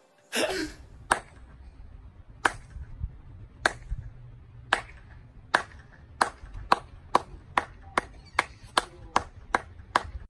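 One person clapping, a slow clap that speeds up: single claps more than a second apart at first, quickening to about two or three a second by the end. A short burst of noise comes about half a second in, and a low steady rumble runs underneath.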